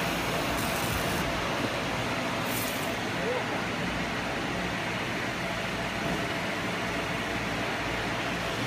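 Steady rushing noise of a mini fiber laser marking machine's cooling fan running, with two brief bursts of higher hiss in the first three seconds.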